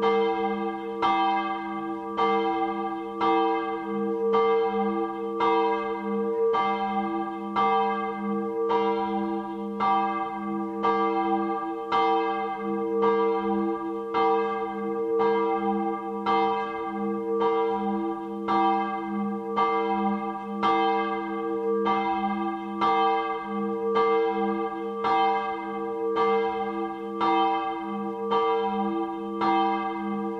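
Large church bell ringing the Saturday evening helgmålsringning that rings in Sunday: an even stroke about once a second, with the bell's low hum carrying on steadily between strokes.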